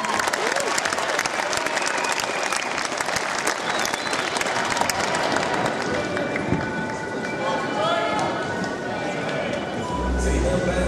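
Arena crowd applauding, a dense patter of clapping with voices calling out over it; the clapping thins out after about halfway.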